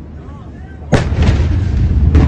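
Blast wave of the Beirut port explosion reaching the microphone about a second in: a sudden, very loud crack, then a deep rumble with further sharp cracks.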